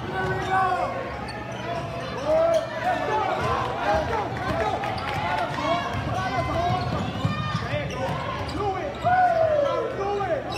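Basketball game in a gym: the ball bouncing on the hardwood court, with many short squeaks of sneakers on the floor and voices of players and spectators throughout.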